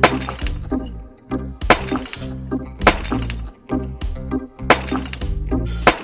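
Background music with a string of sharp breaking and crashing sound effects, about eight hits spread unevenly through it, each ringing on briefly.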